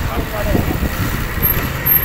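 Street traffic: the engines of motorcycles just ahead run as a steady low rumble, with faint voices in the mix.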